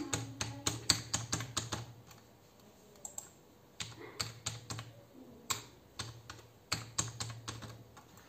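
Typing on a computer keyboard: a quick run of keystrokes for about two seconds, a pause, then a second run. A password is being typed, then typed again to confirm it.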